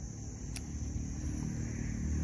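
Low rumble of a passing motor vehicle, growing slowly louder, with a single sharp snip of pruning shears cutting a mai vàng shoot tip about half a second in.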